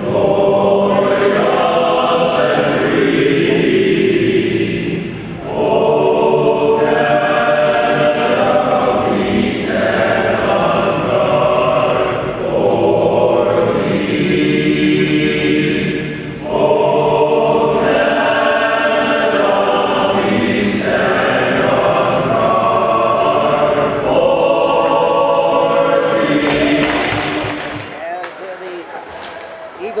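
A male choir singing together in long held phrases with short breaks between them; the singing ends near the end.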